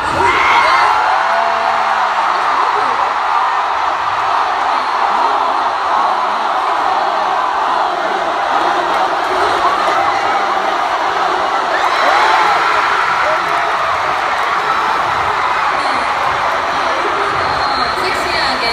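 Large arena crowd cheering and screaming without a break. Many high-pitched voices rise and fall above a steady wall of noise.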